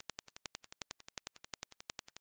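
A rapid, even series of sharp clicks, about twelve a second.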